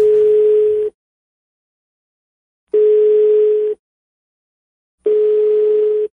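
Telephone ringback tone on an outgoing call: three one-second beeps of a single steady tone, about two and a half seconds apart, with silence between. The called phone is ringing and has not yet been answered.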